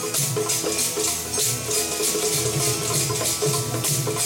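Sikh kirtan music: sustained keyboard notes over tabla, with a crisp rattling percussion beat of about two strikes a second.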